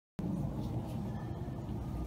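Steady low outdoor background rumble, with no distinct strikes or events.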